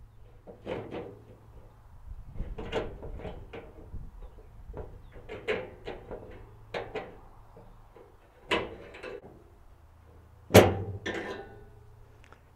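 Scattered metal clicks, scrapes and taps of a screwdriver working on the wiper linkage clips through the steel cowl vent of a 1967-72 Chevy truck, with one louder knock near the end.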